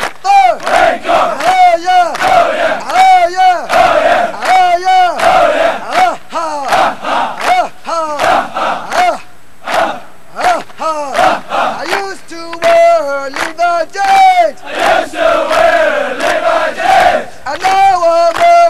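A platoon of Marine recruits shouting a military chant in unison: loud, short syllables in a quick, even rhythm, with a few longer held calls near the middle.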